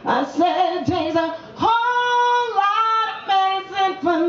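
A woman singing a solo vocal line live into a microphone, in short wavering phrases with one long held note about halfway through.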